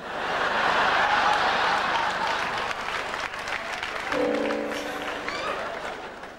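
Theatre audience laughing and applauding, swelling at once and slowly dying away. About four seconds in, a short held musical chord sounds over it.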